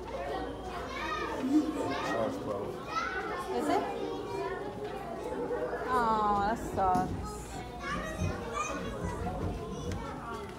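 Children's voices chattering and calling out over one another in a crowded indoor hall, with one child's high-pitched call about six seconds in.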